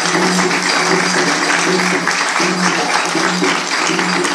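Live instrumental music from a Brazilian jazz sextet: a dense rattle of hand percussion over held low notes.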